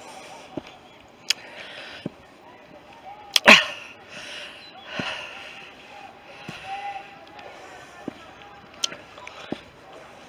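Footsteps on a dry, leaf-strewn woodland path, with a few sharp clicks and knocks scattered through, the loudest about three and a half seconds in.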